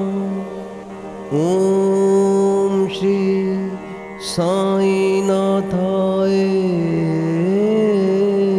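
Devotional mantra chant music: long, steady held notes of a chanted line, dropping briefly about a second in and again around four seconds in before the next phrase slides up into place.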